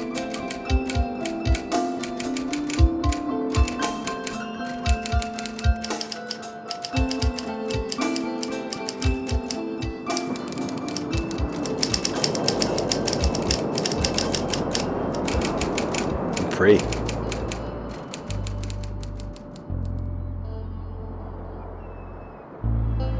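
Manual typewriter keys striking in quick irregular clicks over a melodic music score. Near the end the music swells into low sustained tones and the keystrokes fade out.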